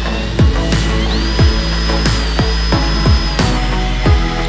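Electronic dance music with a heavy steady bass, repeated deep kick drums that drop in pitch, and a high synth tone that slides up about a second in.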